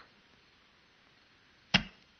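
A near-silent stretch, then a single sudden sharp hit near the end that dies away quickly.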